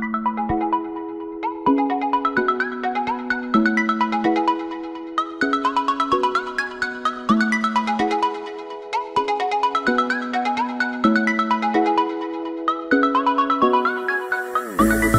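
Background music: a light, repeating melody of quick short notes over lower notes that change every second or so.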